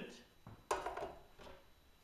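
A stainless steel bowl clanks once, a little under a second in, and rings away briefly. It is handled while weighed flint powder is emptied into a plastic glaze bucket.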